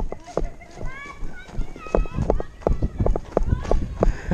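Running footsteps on ground covered in fallen leaves, about three strides a second, with shouts from people nearby in the middle.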